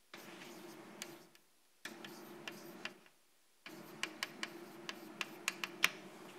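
Chalk tapping and scratching on a blackboard as words are written. It comes in three spells, the last with a quick run of sharp ticks.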